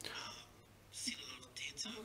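Faint breathy voice sounds, like soft whispering or breaths, in a brief pause between spoken passages.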